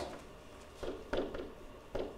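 Quiet room sound with a few soft taps: one about a second in, then two more and one near the end. These are a pen touching the writing surface as a number is written.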